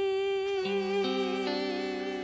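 A female singer holds one long note, with vibrato coming in about half a second in. Soft accompaniment enters beneath it, and its chords change twice.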